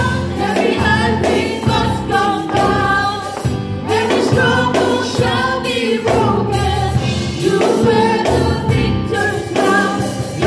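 A worship team of several women and a man singing a gospel song together in harmony into microphones, over a musical accompaniment with a steady bass.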